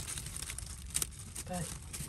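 Dry hay, straw and leaf bedding rustling and crackling as three-week-old rabbit kits shuffle through it and feed, with a few sharp clicks, over a low steady rumble.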